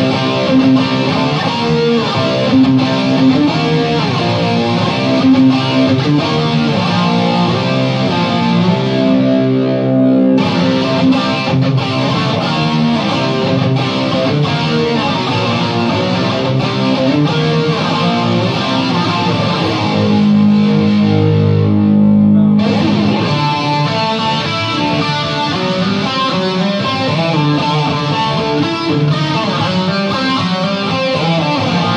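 Distorted electric guitar playing riffs through an amp and effects, loud and continuous, with two short breaks in the high end about ten and twenty-two seconds in.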